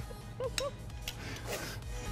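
Faint rubbing and handling of hands folding khinkali dough on a stone countertop, over quiet background music.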